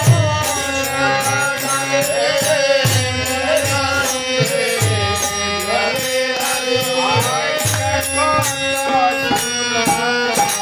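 Bengali devotional kirtan music: a voice chanting a melody over a drum beating a steady rhythm, with quick metallic clashes of hand cymbals.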